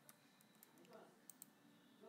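A few faint clicks from a computer mouse and keyboard, scattered over near-silent room tone.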